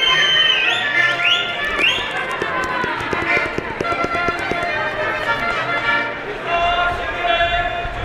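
Live folk dance music from a small street band, with an accordion, playing for a dance troupe. A run of sharp taps from the dancers' shoes on the pavement comes through in the middle, and voices call out over the music.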